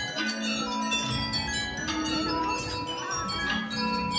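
Drum and lyre corps bell lyres playing a slow passage of sustained, ringing metallic notes at several pitches, with a few short bright hissy strokes from the percussion.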